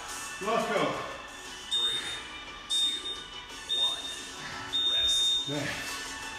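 Digital gym interval timer beeping the end of a work interval: three short high beeps a second apart, then one longer beep.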